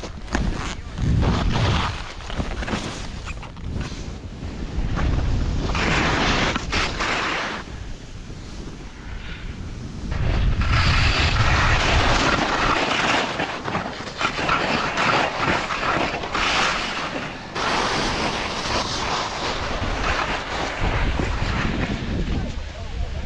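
Skis scraping and hissing over snow on a downhill run, with wind buffeting the microphone, in surges that rise and fall.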